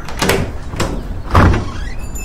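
Sound effects in a bass-boosted Malayalam rap track: a few sharp hits over a steady low bass hum, the loudest a deep thump about one and a half seconds in.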